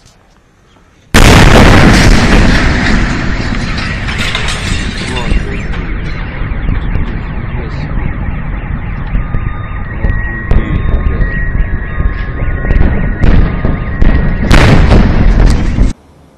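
A sudden loud blast about a second in, then a long rumble that slowly eases, with car alarms sounding under it and a second loud burst near the end. This is the shock wave from the Chelyabinsk meteor's airburst arriving at the ground.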